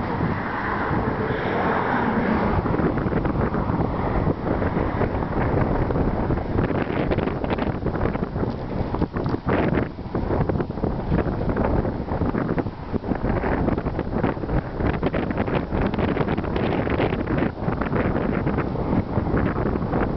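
Wind buffeting the camera microphone: a steady, rough rumble with rapid gusty flutter.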